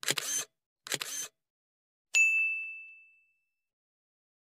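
Logo-animation sound effects: two short noisy bursts about a second apart, then a single high, bright ding about two seconds in that rings out and fades over about a second.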